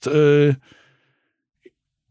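A man's held hesitation sound, a steady drawn-out "uh" lasting about half a second, trailing into a soft breath out, then a faint click near the end.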